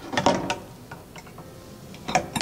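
Plastic clicks and knocks as the filter parts of a water-filter kit are handled and fitted onto a plastic water container: a few sharp clicks in the first half second, then a few faint ticks.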